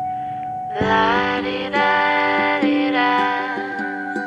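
Background music with sustained melodic notes over held chords. A single held tone opens, and fuller chords come in about a second in.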